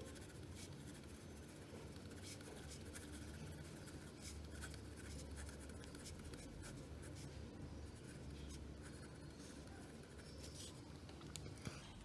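Pen writing on paper: faint, irregular scratches of the pen strokes as a line of handwriting is written out.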